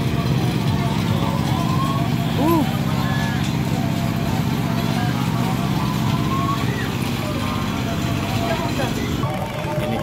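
A steady low engine hum runs throughout, with people's voices in the background.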